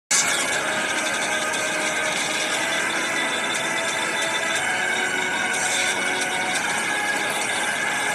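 Action-film soundtrack: a dense, steady mix of sound effects with a few faint held tones, starting abruptly and running without a break.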